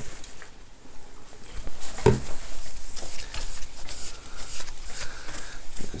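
A cloth wet with isopropyl alcohol rubbing over a MacBook's glass screen in quick, repeated scuffing strokes, wiping off the loosened remains of the anti-glare coating. A single knock comes about two seconds in, as the wiping starts.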